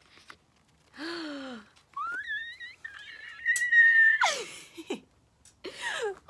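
A young woman's excited squeal: a short falling groan about a second in, then a long high-pitched squeal that rises and holds for about two seconds, trailing off in a breathy falling exhale.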